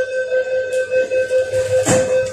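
MTR East Rail line train door-closing warning: a steady, rapidly pulsing electronic beep, with a brief rush of noise near the end.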